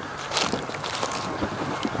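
Steady wind noise on the microphone, with faint rustles and crunches of footsteps through grass and fallen dry leaves.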